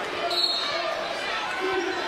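A basketball being dribbled on a hardwood court in a large arena, under a steady wash of crowd noise.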